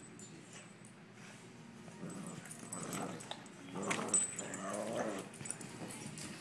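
Boston Terrier puppies play-growling and whining while wrestling over a toy, getting louder about two seconds in.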